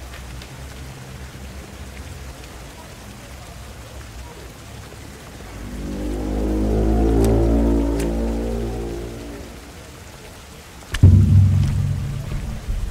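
Opening soundtrack of a horror short film: over a steady hiss of falling water, a deep sustained chord swells up about halfway through and fades away, then a loud low cinematic impact hits near the end.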